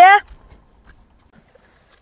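A voice finishing a sentence right at the start, then near silence with a few faint scattered ticks.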